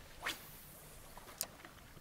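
A light fishing rod swishing through the air on a cast, followed a little over a second later by a single sharp click.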